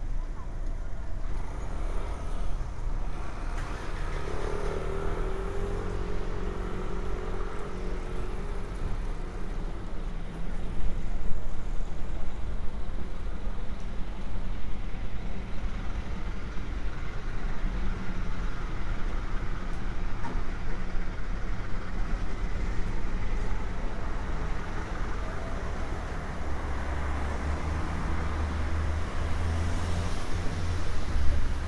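City street ambience: road traffic running past, with people's voices in the background. A heavier vehicle rumble builds near the end.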